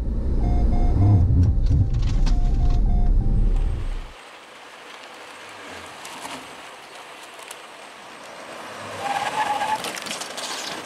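Jeep Cherokee's in-cabin road and engine rumble at speed, with a short electronic warning beep repeating several times, typical of a forward collision alert during an emergency-braking test. About four seconds in the rumble cuts off to quieter outdoor vehicle noise, with a brief squeal near the end.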